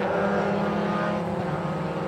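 Mazda Roadster race car engines running at sustained revs: a steady drone that eases a little about halfway through.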